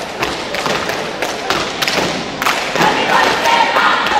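A group of scouts stamping their feet and clapping through a cheer routine, with a string of sharp thuds and claps. Group voices shout in the second half.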